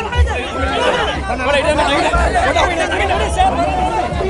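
A packed crowd of men talking and calling out at once, many voices overlapping, with irregular low thuds underneath.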